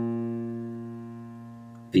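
A single low B-flat played on a piano with the left hand, held and slowly dying away.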